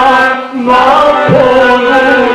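Man singing a Balkan folk song into a microphone, drawing out wavering, ornamented notes, with a short breath about half a second in.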